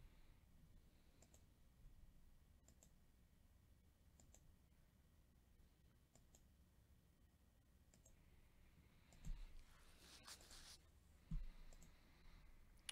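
Near silence with faint computer mouse clicks every second or two. There are two soft thumps and a brief rustle in the last few seconds.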